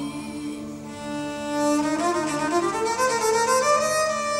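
Instrumental passage of a song: a bowed string instrument plays a sustained melody that climbs in pitch in the second half, over a steady low drone.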